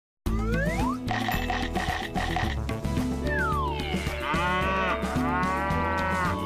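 Children's TV bumper jingle with cartoon sound effects: a rising glide in the first second and a falling glide about three seconds in, then a cartoon cow mooing twice over the music near the end.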